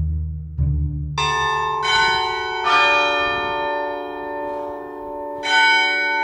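Bells struck several times: first about a second in, then near two and three seconds, and twice more near the end. Each strike rings on under the next. At the start a few low plucked string notes play, as part of a background music track.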